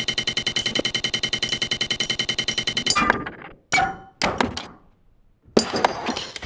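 Improvised electronic music: a sampled sound retriggered in a rapid, buzzing stutter of about a dozen repeats a second, cut off sharply about three seconds in. Then come scattered single percussive hits with short ringing tails, thinning out before one louder hit near the end.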